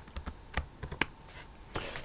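Typing on a computer keyboard: an irregular run of short key clicks, two of them sharper about half a second and a second in.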